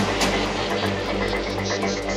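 Electronic dance music from a DJ set: a steady bass line under a buzzing, rhythmic synth texture, with a fast run of short high-pitched pulses coming in near the end.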